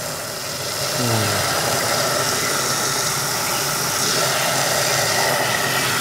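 Water from a garden hose gushing into a large aluminium basin of laundry and splashing on the wet cloth: a steady rush with a faint low hum underneath.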